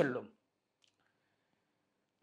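A man's word trailing off, then near silence with a single faint click just under a second in.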